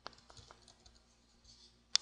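A few faint computer keyboard clicks, then one sharper, louder click near the end.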